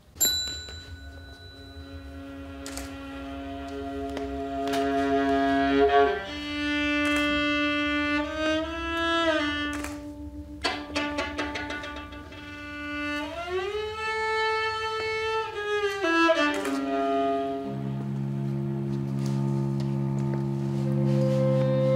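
Live chamber ensemble of bowed strings (violin, viola, cello) with flute and clarinet playing: long held notes that slide slowly up and down in pitch, after a sharp attack at the very start, with lower notes coming in near the end.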